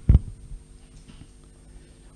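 A short, low thump right at the start, then a faint steady hum.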